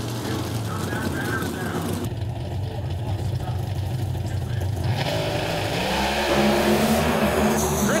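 Four NHRA Pro Stock drag cars, each with a naturally aspirated 500-cubic-inch V8, running at high revs as they launch from the line and race down the strip.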